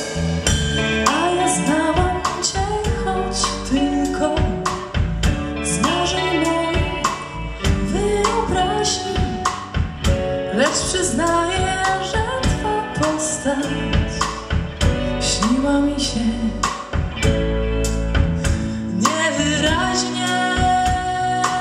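Live band playing a ballad: a woman sings the melody over a steady drum kit beat and electric guitar.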